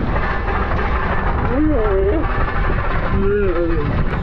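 Wind buffeting the helmet camera's microphone and tyres rumbling over a gravel track as a tandem downhill tricycle rolls fast downhill. Two drawn-out, deep shouts from the rider, slowed down in a replay, come about one and a half seconds in and again near the end.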